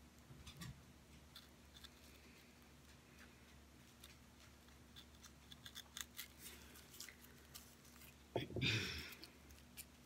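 Utility knife blade scratching and slicing through a candle's paper wrapping, faint small scrapes and clicks scattered through. A louder paper rustle and knock near the end.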